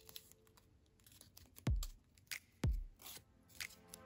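Origami paper being creased and folded by hand: faint crinkling with several sharp crackling snaps, the loudest two carrying a low thump, a little under two seconds in and about a second later.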